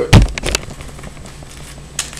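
Two sharp thumps on a laminate countertop, the first and louder just after the start and a second about half a second in, as foil trading-card packs are handled on the counter.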